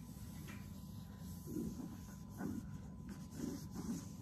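A damp baby wipe rubbing over coated canvas in a few faint, soft strokes, over a low steady hum.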